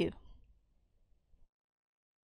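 A woman's voice finishing a word, then near silence from about half a second in.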